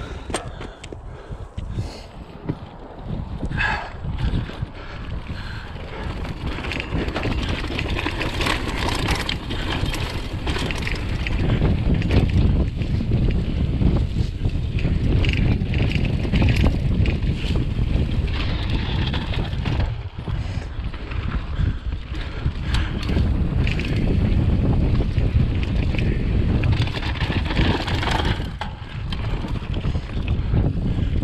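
Mountain bike rolling fast down a rough dirt singletrack: tyre rumble and rattling of the bike, with wind buffeting the microphone. It starts quietly with a few clicks and grows louder as speed builds, loudest in the second half.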